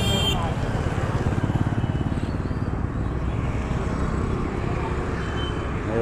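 Traffic on a city street, with a motorcycle engine running close by in a steady, fast pulsing rumble.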